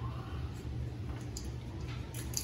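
Steady low background hum with faint hiss and a couple of faint, light clicks near the end; the disassembled engine is not running.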